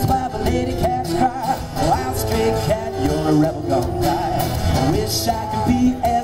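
Two acoustic guitars strummed in a steady rhythm, with a man singing over them into a microphone.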